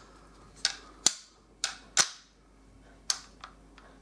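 Steel parts of an M1 Garand clicking as the operating rod is worked back along the receiver during disassembly: a handful of sharp metallic clicks, the loudest about one and two seconds in.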